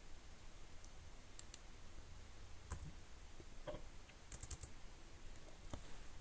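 Faint computer keyboard keystrokes, a few irregular clicks with a short flurry a little after the middle, as a line of code is edited.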